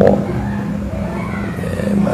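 A steady low hum, like a running engine or motor, heard between a man's sentences.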